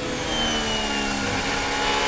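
Formula 1 car's turbocharged V6 engine heard onboard, running with its pitch drifting slowly down.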